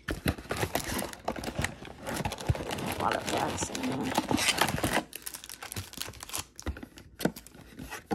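Trading-card mega box and its foil pack wrappers being opened by hand: dense crinkling and rustling with small clicks for about five seconds, then sparser, quieter handling.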